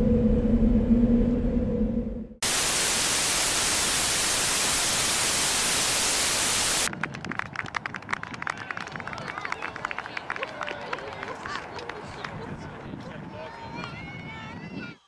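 A low steady hum, cut off about two seconds in by a loud burst of static hiss that lasts about four seconds. The static gives way to crackly old home-video audio with many small clicks and faint, distant voices.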